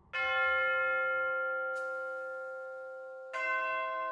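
Two bell strikes of different pitch, about three seconds apart, each ringing on and slowly fading; the second bell is lower.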